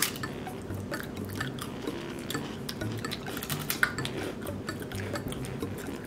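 Two people biting into and chewing puffed rice cakes: many small, irregular crisp crunches.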